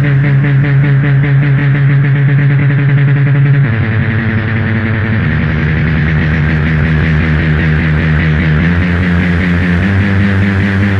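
Industrial power-electronics music: loud, dense analog electronic drones under a fast-pulsing, distorted noise texture. The low drone drops and shifts pitch a little under four seconds in and again about five seconds in.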